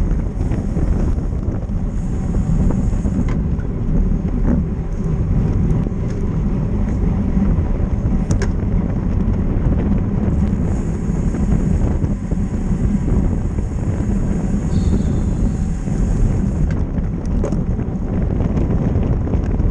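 Steady wind buffeting the microphone of a camera on a road bike at race speed, mixed with road and tyre noise. A fainter high hiss comes and goes twice, with a few short clicks.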